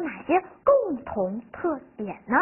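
Only speech: a woman speaking Mandarin Chinese, her voice rising and falling in pitch.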